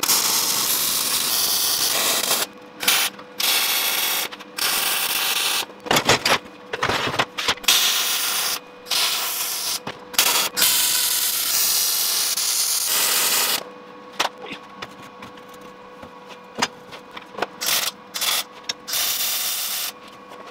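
Arc welding on a steel frame: several crackling, hissing weld runs of a few seconds each, with short breaks between them. After about thirteen seconds come quieter scattered clanks and taps of metal parts being handled.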